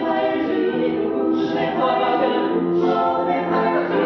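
A small musical-theatre vocal ensemble singing held notes in harmony, with new sung phrases starting about a second in and again near three seconds.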